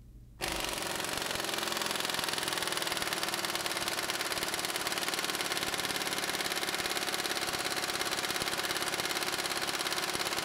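Impact wrench hammering without a break through a thin-wall deep lug nut socket on a torque dyno. It is a fast, steady stream of blows starting about half a second in, while the bolt is driven tighter.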